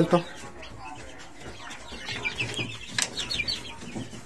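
Chickens in pens: a run of short, high chirps from about two seconds in, with a single sharp knock near the three-second mark.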